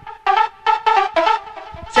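Rave dance track from a DJ set playing on its own: a quick run of short melodic notes between the MC's shouts.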